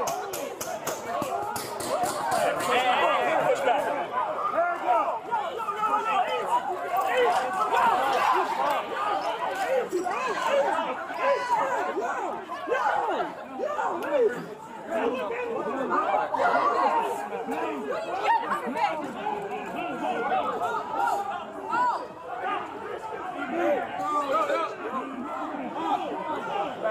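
Many voices talking over one another in a busy crowd, with no single clear speaker, picked up on a body-worn camera. A run of light clicks sits under the voices in the first few seconds.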